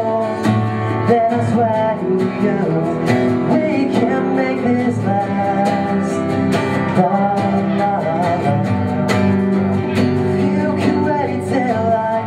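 Music: two acoustic guitars strummed together, with a singing voice over them.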